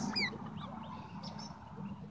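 Guinea pigs squeaking: a couple of short, high squeaks just after the start, then fainter scattered chirps.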